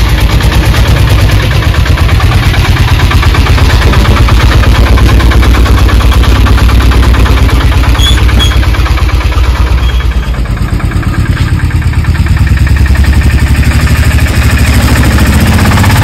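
Small mini pickup truck's engine running close by with a steady, rapid chugging beat as the truck pulls out and drives off.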